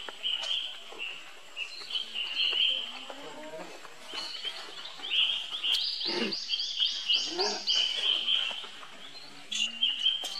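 Infant macaque squealing and screaming in repeated high-pitched cries as adult macaques grab and pull at it. Near the middle comes a quick run of short cries, about four a second.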